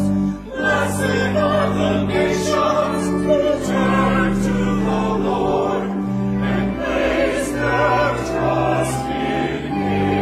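Church choir singing an anthem with organ accompaniment. There is a brief break between phrases about half a second in, and the organ holds steady sustained bass notes under the voices.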